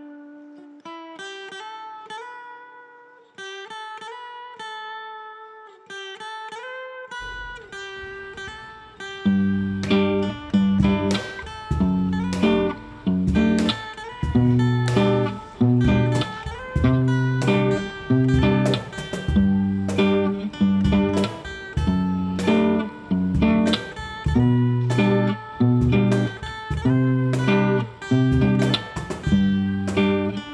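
Rhythm and lead acoustic guitars playing an instrumental intro. It opens with softly picked single notes, then steady rhythmic strumming comes in about eight or nine seconds in and keeps a regular pattern.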